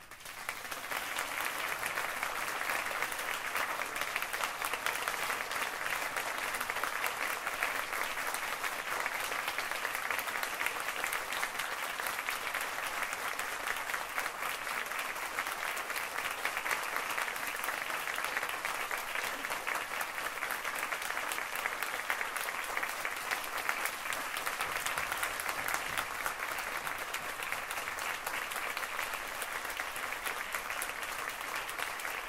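Audience applause that breaks out just after the start, right after the band's last note, and keeps up steadily.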